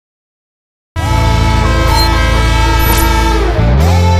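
TV show title music starting abruptly about a second in, with a loud sustained horn-like chord over it and a rising pitch sweep near the end.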